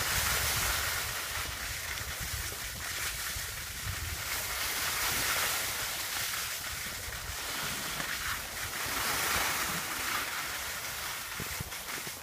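Wind buffeting a handheld camera's microphone and skis hissing over packed snow during a downhill run: a steady rush that swells and eases a little.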